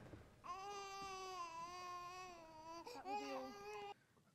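A baby crying, heard quietly from a TV episode's soundtrack: one long, steady wail for about two and a half seconds, then a shorter cry.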